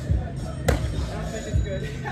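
Background music and distant voices echoing in a large gym hall. One sharp slap sounds a little over half a second in, and dull low thuds come near the start and at about one and a half seconds.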